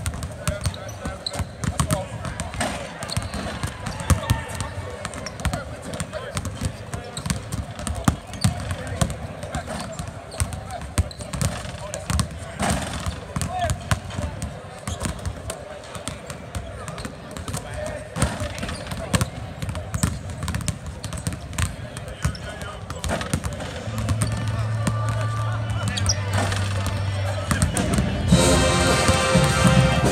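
Several basketballs bouncing on a hardwood court at irregular, overlapping intervals, with players' voices behind them, echoing in a large arena. A steady low hum joins near the end.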